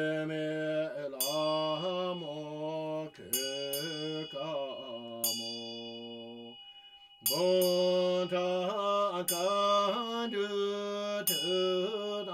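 A male voice chanting a Tibetan Buddhist long-life liturgy in a slow melodic line whose pitch glides and wavers, with a bell struck about once a second or two, its ringing carrying on under the voice. The chant breaks off briefly about six seconds in, then resumes.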